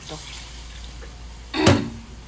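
Water poured from a can into liquid in a metal wok, splashing steadily, with one sharp knock about one and a half seconds in.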